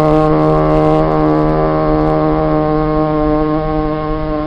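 A male voice chanting a Murid khassida holds one long note at a steady pitch, slowly growing quieter.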